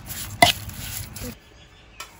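Metal spoon mixing minced meat filling in a metal bowl, with a sharp clink of the spoon against the bowl about half a second in. The mixing stops after about a second and a half, leaving only a quiet background.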